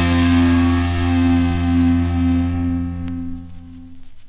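Emocore band's final distorted electric guitar and bass chord held and ringing out. The high end dies away first and the whole chord fades over the last second.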